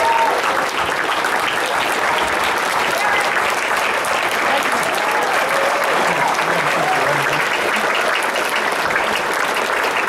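A large audience applauding steadily, with a few voices calling out among the clapping.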